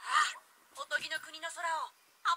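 A short, loud noisy burst at the very start, then a high-pitched anime girl's voice speaking a line of Japanese dialogue, played through a tablet's speaker.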